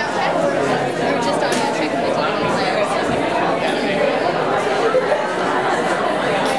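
Many people talking at once: steady crowd chatter in a busy room.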